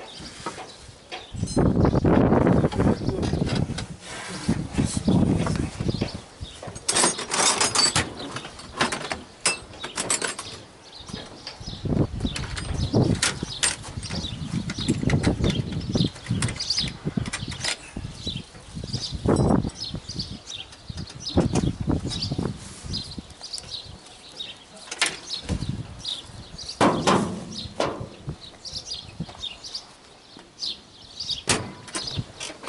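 Wind buffeting the microphone in uneven gusts, with scattered knocks and clanks of metal from the combine's cab.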